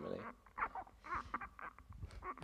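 Handling noise from a handheld microphone being passed between people: faint rustles and a few soft bumps, with low off-mic voices.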